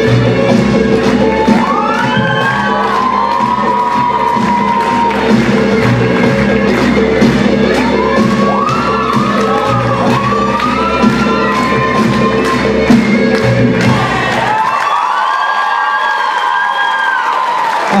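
Azerbaijani folk dance music with a steady beat plays while the audience cheers and gives high whoops in bursts. The music stops about three-quarters of the way through, and the cheering and whooping carry on alone.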